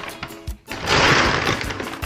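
Paper grocery bag and plastic produce bag rustling and crinkling as produce is lifted out, a loud rustle of about a second starting just under a second in, over background music.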